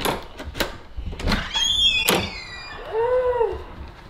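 A front door's keypad deadbolt and handle being worked and the door opened: a series of sharp clicks and knocks in the first two seconds, with a brief high squeak around two seconds in. A short rising-and-falling vocal sound follows about three seconds in.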